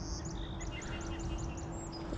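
A bird singing a quick run of short, evenly repeated high chirps, about seven a second, lasting about a second and a half.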